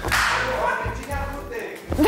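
A sudden whip-crack swoosh sound effect that fades over about half a second, over background music.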